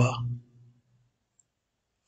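The end of a man's spoken word, then near silence broken once, about a second and a half in, by a single faint click of a computer mouse button.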